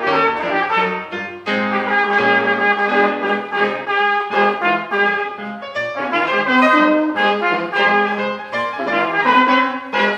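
Instrumental passage from a small jazz band, with a brass horn carrying the melody in a run of changing notes over the band.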